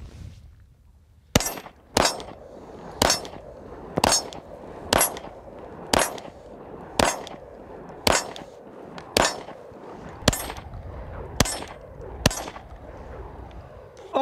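Glock 17 Gen5 9mm pistol firing about a dozen shots in slow, steady fire, roughly one a second, starting about a second and a half in. Each shot is followed by a short ring, typical of hits on a steel target.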